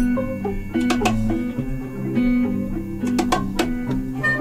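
Live instrumental band music led by electric guitar notes, with a few sharp percussion hits.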